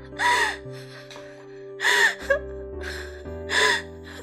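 A person sobbing: three short, breathy gasping sobs about a second and a half apart, over soft background music with long held notes.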